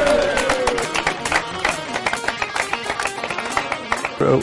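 A roomful of people clapping in irregular, overlapping claps, with one voice's falling whoop of cheering fading out in the first second.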